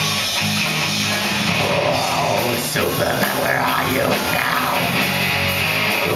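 Live heavy rock band playing loud: distorted electric guitars over bass and drums, in an instrumental stretch between sung lines.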